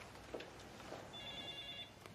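An electronic office telephone ringing faintly in the background: one ring of about three-quarters of a second, a little past a second in, made of several steady high tones.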